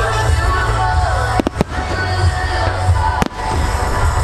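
Fireworks exploding overhead, with three sharp bangs: two close together about a second and a half in and one more near three seconds, over loud music with a heavy bass.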